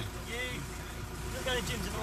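Steady low rumble of a van's cabin and engine noise, with faint snatches of talk.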